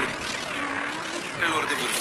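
Electronically distorted audio with warbling, sweeping pitch glides that rise and fall repeatedly, as from heavy effects processing laid over a logo sound.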